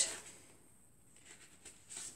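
Mostly quiet room with faint rustling of paperback book pages being handled and turned, a few soft rustles near the end.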